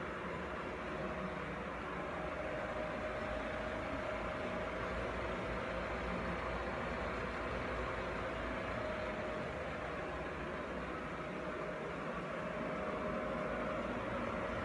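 MerCruiser 3.0-litre four-cylinder inboard engine idling steadily, with a thin steady whine over the running.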